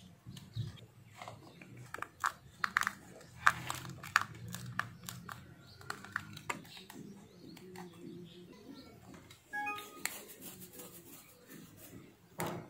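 Small plastic clicks and taps from a mobile phone charger being handled and its case pressed shut, over a faint low hum. Near the end comes a denser cluster of clicks as the charger is plugged into a wall socket.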